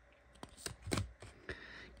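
Rigid plastic card top-loaders being handled and slid against each other as the front one is moved off the stack: a few faint clicks and a soft rustle.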